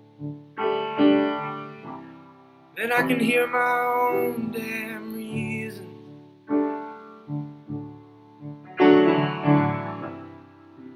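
Slow piano chords, each struck and left to ring and fade, with a wordless sung 'ooh' line over them from about three to five and a half seconds in.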